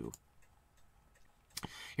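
Near silence with a few faint ticks, then a single sharp click near the end: a computer mouse click as the browser switches to another listing.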